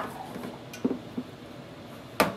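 Quiet handling of a stainless steel catering pan of wet yarn and water as it is moved on an electric hot plate: a few light taps a little under a second in, over a faint steady hiss.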